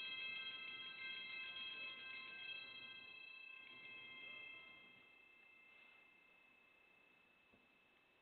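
Altar bells rung at the elevation of the consecrated host: several high bell tones shimmering as the bells are shaken for the first few seconds, then left to ring out and fade away.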